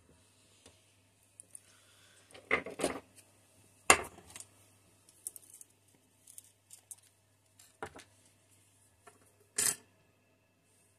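Scattered small clicks and knocks of plastic model parts and a small glass paint jar being handled on a work table, the sharpest about four seconds in, as the jar's screw cap is taken off.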